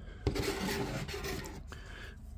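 A steel ruler being slid and scraped across paper on a cutting mat as it is moved and picked up. There is a sharp tap about a quarter second in, then a rough rubbing that lasts about a second.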